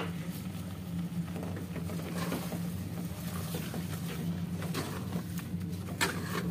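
A wooden spoon stirring thick carrot halwa in an aluminium pot, with faint irregular scraping and pattering over a steady low hum. There is one sharp click right at the start.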